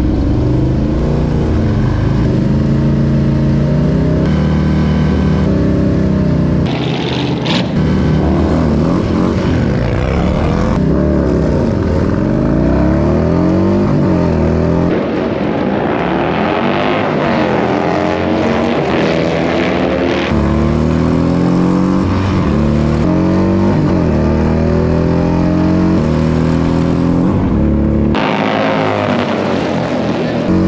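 Harley-Davidson Milwaukee-Eight V-twin bagger engines revving hard and accelerating down a drag strip, their pitch repeatedly climbing and dropping through the gears. The sound changes abruptly several times.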